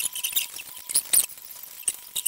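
Plastic 11x11 puzzle cube being twisted by hand: its layers click and squeak as they turn, in quick irregular bursts.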